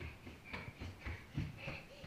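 A toddler running on a hardwood floor: faint, quick footfalls about three or four a second, with her heavy breathing.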